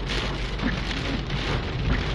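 Heavy rain falling on a car's windshield and roof, heard from inside the car as a dense, steady hiss.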